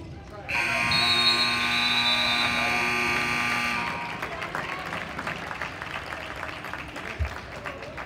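Gym scoreboard buzzer sounding one long, loud tone for about three seconds, starting half a second in. After it come general court and hall noise and a single thump near the end.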